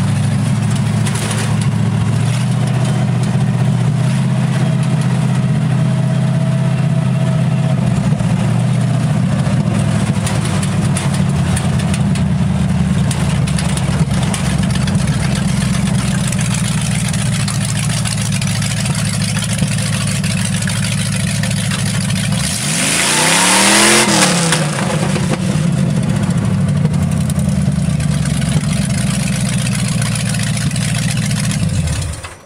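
Engine of a 1950 Ford F1 rat rod truck running on the move, heard from inside the cab as a steady low drone. A little over twenty seconds in it revs up sharply with a rising whine and a rush of noise, then drops back.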